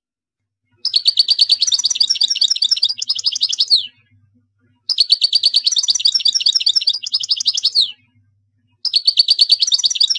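North African goldfinch (European goldfinch) singing: rapid, trilling song phrases of about three seconds each, separated by short pauses, each ending in a falling note. The third phrase begins near the end.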